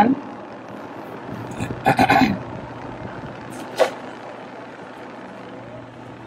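Car cabin noise as the car creeps forward: a steady low hum from the engine and road, with a short burst of a voice about two seconds in and a brief sharp sound near four seconds.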